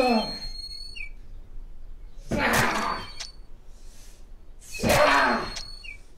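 A broom struck down on the ground over and over, each blow with a loud yell from the man swinging it that falls in pitch. Two full blows come about two and a half seconds apart, after the tail of one at the very start.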